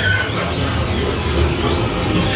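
Haunted-house attraction soundtrack: an ominous music bed over a steady low rumble, with high whistling sound effects that glide up and down in pitch.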